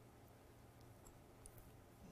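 Near silence: room tone, with a few faint clicks about halfway through and again near the end.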